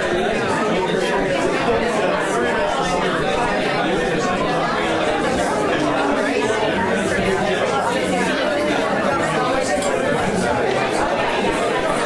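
Many people talking at once in a large room: a steady crowd chatter with no single voice standing out.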